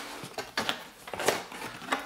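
Cardboard box being opened by hand: flaps pulled and folded back with rustling and scraping, and a few light knocks.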